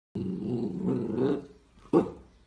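Husky puppy growling low and steadily at a plastic bottle for over a second, then letting out a short, sharp bark near the end.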